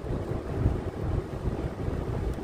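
Low, uneven rumble of background noise inside a car's cabin.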